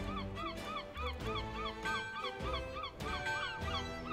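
Gulls calling in a rapid run of short rising-and-falling cries, about five a second, over background music with a steady beat.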